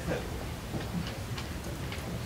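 Several faint, irregular clicks over low room noise, in a brief pause between words.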